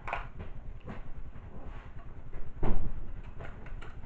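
Hands handling a small cosmetic package: scattered rustles and light clicks, with one louder bump a little over two and a half seconds in, over a steady low background rumble.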